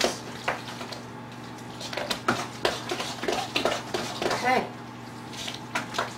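A spoon stirring a thick, wet filling in a glass mixing bowl: irregular squelching and scraping, with light clicks of the spoon against the bowl, busiest in the middle of the stretch.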